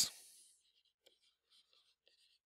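Faint scratching of a stylus writing on a tablet screen: a few short, light strokes.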